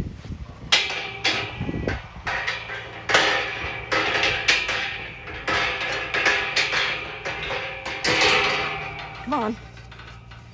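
Galvanised steel field gate rattling and clanking as it is handled, a dense run of irregular metallic knocks with a faint ringing after them. A short wavering call comes near the end.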